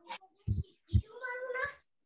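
A few soft knocks over the call audio, then one short high-pitched drawn-out vocal call, rising slightly, starting about a second in.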